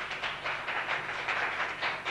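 A small audience applauding, with individual hand claps heard in an uneven, rapid patter.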